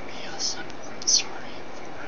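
A man whispering, heard as two short breathy hisses, the second louder, over a steady background hiss.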